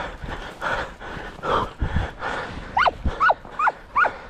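Hare-hunting hound yelping: a run of short, sharp yelps, each falling steeply in pitch, about two a second, starting a little under three seconds in. These are typical of a hound giving tongue on a hare's scent. Before the yelps, scrub rustles under walking feet.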